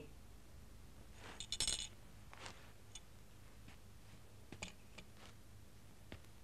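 Quiet room with faint small handling sounds: a short cluster of light clinks about a second and a half in, then a few scattered soft ticks.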